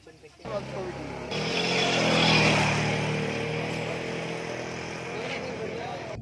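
A motor vehicle passing along the road, its engine growing louder to a peak about two seconds in and then slowly fading, with a crowd talking.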